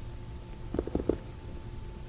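Steady low hum of the recording, with a brief cluster of three or four short, soft sounds about a second in.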